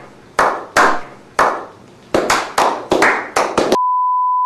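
Hand claps in a slow clap that starts with single claps well apart and quickens to a rapid run of several claps a second. Near the end it is cut off abruptly by a steady high test-tone beep, the kind that accompanies a broadcast test card.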